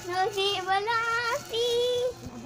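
A young girl singing close to the phone, a phrase that climbs in pitch and then one held note near the end.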